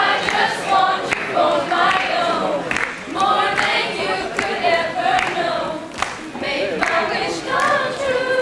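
A large mixed group of young voices singing a song together, unaccompanied, with sharp short sounds keeping a beat about twice a second.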